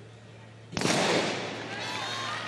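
Starting gun firing once to start a 4x400 m relay, a single sharp report about three-quarters of a second in. The report rings on through the stadium.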